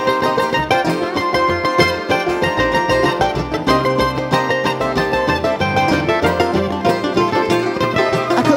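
Live bluegrass band playing an instrumental break: quick mandolin picking over upright bass and acoustic guitar.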